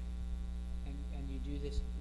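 Steady electrical mains hum, a low drone with its overtones, with faint speech coming in about a second in.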